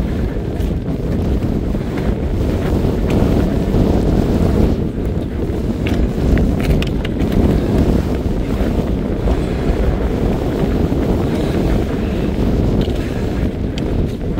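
Strong wind buffeting the camera microphone, a continuous low-pitched noise with no break.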